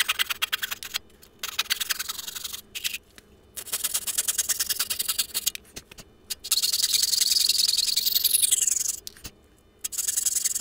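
Coping saw cutting a thin wooden blank, the footage sped up so the strokes run together into a fast, high rasp. It comes in four bursts with short pauses between them; the longest, in the second half, slides down in pitch.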